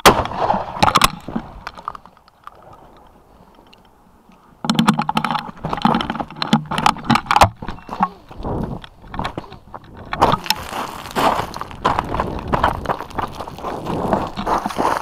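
A loud shotgun shot right at the start, fading over a couple of seconds. From about five seconds in there is a long run of knocking, scraping and rustling from the gun and camera being handled and carried through rocky scrub.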